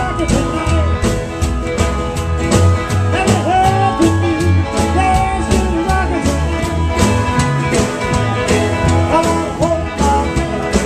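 Live rockabilly band playing with a steady beat: upright double bass, acoustic guitar and electric guitar together.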